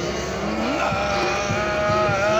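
Super Saiyan–style powering-up effect: a continuous engine-like roar with held pitched tones that glide upward partway through.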